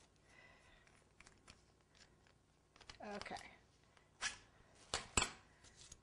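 A small decorating tool handled and worked apart by hand while red fondant is cleared out of it: scattered light clicks and rustles, with a few sharper clicks in the second half.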